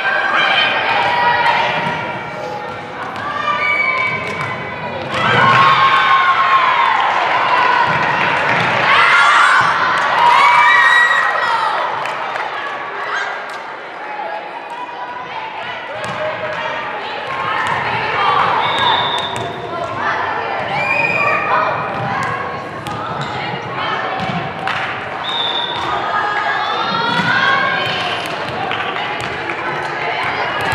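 Volleyball rally in a large gym: high-pitched voices shouting and calling across the court, loudest about five to eleven seconds in, with the thuds of the ball being hit and bouncing on the hardwood floor.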